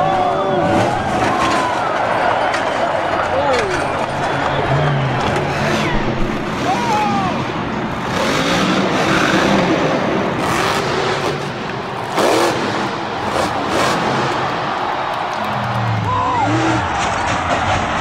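Monster Jam trucks' engines running and revving over arena crowd noise, played back from a crash compilation, with a voice talking over it and some music.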